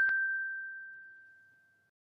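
A single bell-like ding ringing out and fading away over about a second and a half, with a light tick just after it starts.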